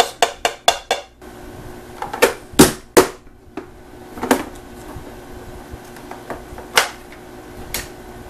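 Plastic press-down vegetable chopper knocking as its lid is pushed down to dice celery: a quick run of about five sharp knocks in the first second, then single louder clunks spread a second or more apart.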